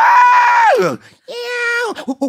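A person vocally imitating animal cries: a loud, high, drawn-out screech that rises and then falls away, followed by a lower, quieter held cry.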